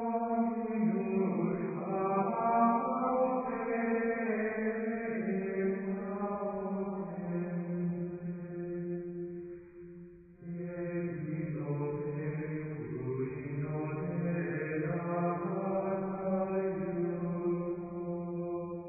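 Liturgical chant: voices singing long, slowly moving held notes, with a brief break about ten seconds in.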